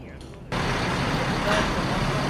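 Steady vehicle engine noise, a low hum under a broad hiss, cutting in abruptly about half a second in.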